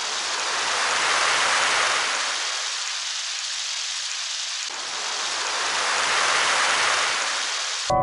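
A steady hiss like heavy rain, swelling and easing twice, that cuts off abruptly at the end.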